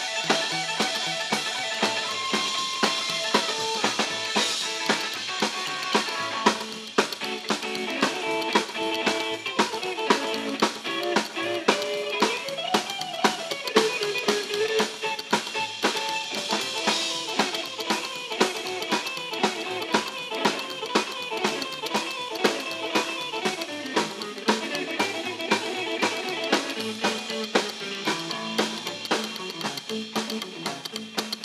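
Live rockabilly band playing without vocals: electric guitar lines over an upright double bass and a drum kit keeping a steady beat. A guitar note bends up and back down about halfway through.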